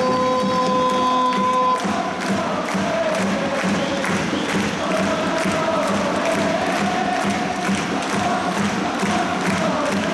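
Stadium crowd singing a supporters' chant together to a regular drum beat, with clapping. A steady held note stops about two seconds in, before the sung tune takes over.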